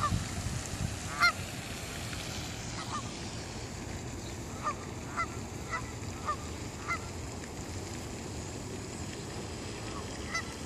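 Geese honking: short single honks, about nine spread over the first seven seconds, the loudest about a second in.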